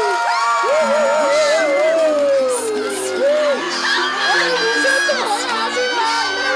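Crowd cheering, shouting and whooping. Music comes in about two seconds in and plays under the cheers.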